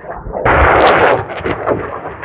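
M270 Multiple Launch Rocket System firing a rocket: a sudden loud roar about half a second in that peaks for under a second, then trails off unevenly with a low rumble.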